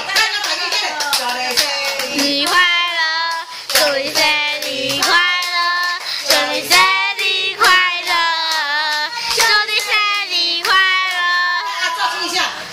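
A young girl singing a song while an older woman claps her hands along with it.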